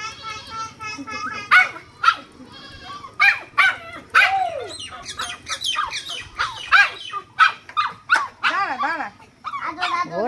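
A puppy barking over and over in short, high yaps.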